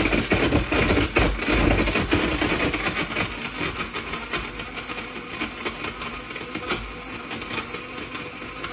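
VEGA PUNK nut milk maker's blade motor blending almonds, dates and water: a steady whirring with a dense rattle of blade and nuts, loudest in the first couple of seconds, then settling a little.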